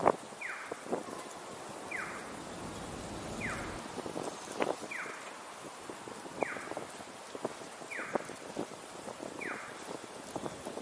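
Audible pedestrian crossing signal chirping: a short falling electronic tone repeated evenly about every one and a half seconds, over low street noise with scattered clicks.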